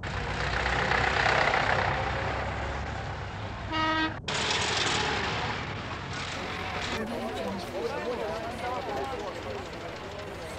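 Engines of a slow convoy of tractors and farm vehicles running past, with one short horn toot just before four seconds in that cuts off abruptly. People's voices chatter under the engine noise in the second half.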